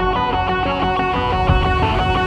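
Background music with a strummed and plucked guitar, in steady rhythmic notes.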